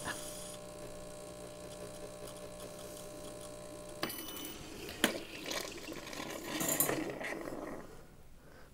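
Breville Barista Touch espresso machine's pump humming steadily as the shot pours, stopping with a click about halfway through. Then a few clinks and handling noises of a glass being lifted off the drip tray.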